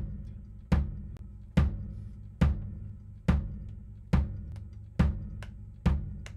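Recorded kick drum played back in a steady beat, eight hits a little under a second apart, each with a long low boom. It runs through a Culture Vulture tube saturation plugin that adds mid-range harmonics and a lot of saturation.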